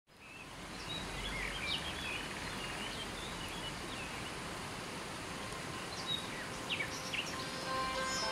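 Steady rush of a river flowing over rocks, fading in at the start, with small birds chirping in short calls throughout. Soft instrumental music comes in near the end.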